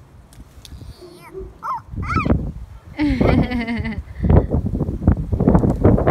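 A young child's wordless high-pitched vocal sounds: short squeals about two seconds in, then a longer wavering cry at about three seconds. Under them, wind buffets the microphone with a low rumble that grows heavier in the second half.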